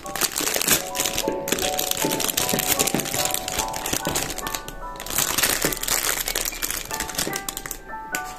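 Thin clear plastic bag crinkling and rustling steadily as makeup sponges are worked out of it, over soft background music with a light melody.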